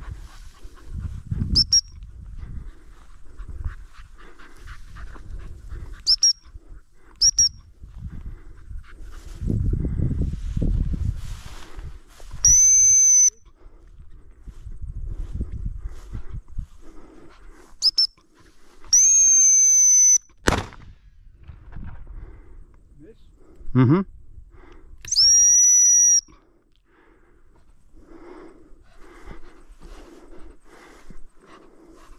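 Gundog whistle blown by a spaniel handler, a single high steady note. It comes as four short pips and three long blasts of about a second each, the pip and blast signals used to turn and stop a hunting spaniel.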